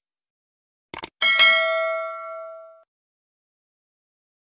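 Subscribe-button animation sound effects: a quick mouse click about a second in, then a bright bell ding that rings out and fades over about a second and a half.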